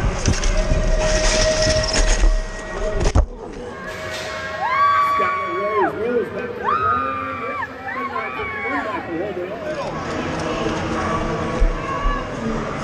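Wind and rolling noise on a BMX helmet camera's microphone as the bike runs down the dirt track, which cuts off abruptly about three seconds in. Then spectators yelling and cheering the riders on, in several long, high, held shouts.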